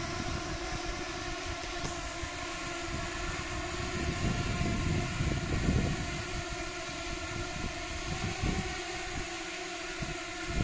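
A swarm of light-show drones hovering overhead: a steady hum of many propeller tones at once, with a low rumble swelling around the middle.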